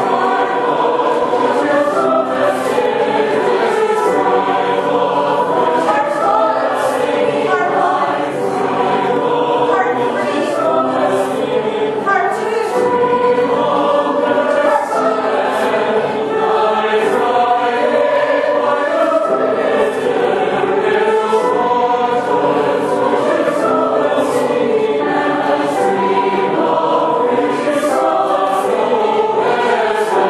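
A group of singers singing a choral piece together in several parts, with repeated ostinato lines layered under the melody.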